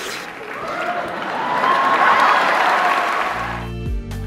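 Audience applauding with music playing underneath. The applause swells and then fades out near the end.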